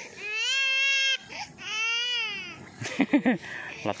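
A high-pitched voice giving two long, wavering, crying calls, each about a second long, followed by a few short spoken sounds near the end.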